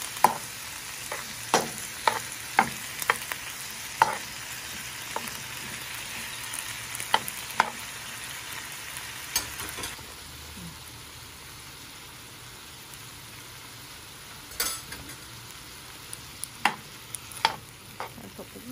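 Pineapple and tomato chunks sizzling in a nonstick frying pan while a metal ladle stirs them, knocking and scraping against the pan in sharp, irregular clicks. The sizzle gets a little quieter about ten seconds in.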